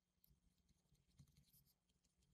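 Near silence, with faint, irregular scratching and tapping of a stylus writing on a digital pen tablet.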